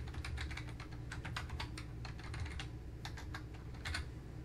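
Computer keyboard typing: a quick run of keystrokes, a short pause, then a few more keystrokes near the end.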